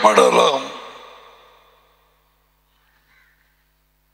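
A man's voice through a headset microphone: a few words ending about half a second in and fading away, then near silence.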